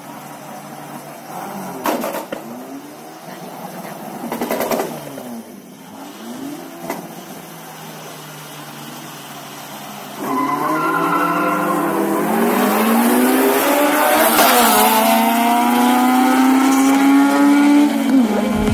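Street-race car engines revving in short blips, then from about ten seconds in a car accelerating hard, its engine note loud and climbing steadily in pitch.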